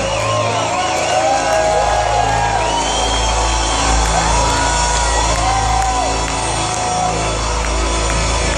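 Live rock band on stage holding sustained low notes, with the audience shouting, whooping and whistling over it.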